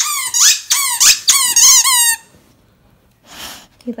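A rubber squeaky dog toy squeaked in a quick run of short, rising squeaks, about three to four a second, as a dog chews it. The squeaks stop about two seconds in, and a short soft rustle follows.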